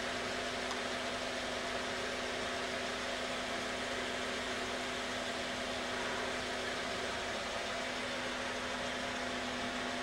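HHO electrolysis cell fizzing steadily as its electrolyte gives off gas, over a steady low electrical hum.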